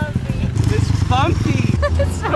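Small engine of a mini dirt bike running as it is ridden across grass, with people calling out over it.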